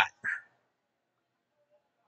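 A man's voice trailing off at the end of a phrase, a brief short vocal or breath sound a moment later, then near silence: room tone.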